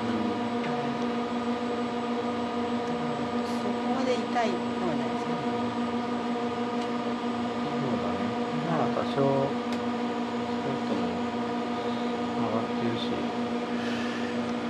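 A steady machine hum, several even tones held unchanged, with faint voices in the background.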